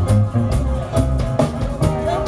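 Live reggae band playing, with a deep bass line, drum hits and guitar, and little singing in this moment.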